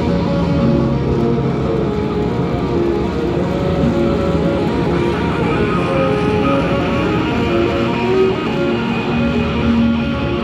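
Live post-rock band music: layered guitars and other instruments in a dense, steady wall of sustained notes, without let-up.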